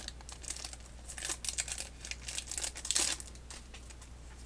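Foil wrapper of a Pokémon trading card booster pack crinkling as it is torn open by hand, a run of short crackles, loudest about a second in and again near three seconds.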